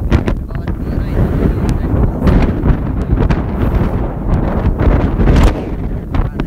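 Wind buffeting the phone's microphone: a loud, steady low rumble.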